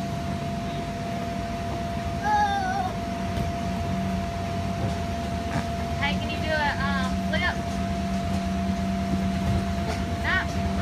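Steady hum of an inflatable bounce house's air blower, with a young child's high-pitched squeals and calls twice: about two seconds in, and again for a second or so past the middle.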